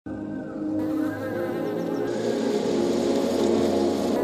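Honeybees buzzing, a steady drone that grows gradually louder.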